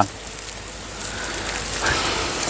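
Leaves of young durian seedlings rustling and brushing as a person pushes through them, a crackly patter that grows a little louder about a second in.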